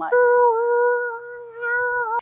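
A woman's voice imitating an alien noise: one long, high, steady 'oooh' hoot at a nearly fixed pitch with a slight waver. It is loudest in the first second, dips, then swells again near the end.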